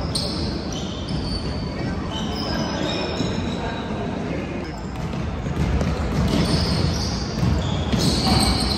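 Basketball game in a large gym: sneakers squeaking on the hardwood court and a ball bouncing. Short high squeaks come thick in the first few seconds and again near the end.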